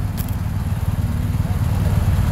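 Steady low rumble of motor vehicle engines and road traffic, with a faint click shortly after the start.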